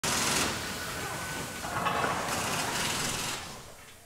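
Logo-intro sound effect: a burst of hissing, swishing noise at the start, a second swell with a few faint tones, then fading away near the end.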